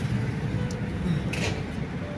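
Steady low rumble of road and engine noise inside a moving car's cabin, with a brief hiss about a second and a half in.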